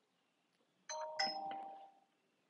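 A two-note electronic chime, like a doorbell or notification ding-dong, about a second in. The two notes come in quick succession, ring briefly and fade out.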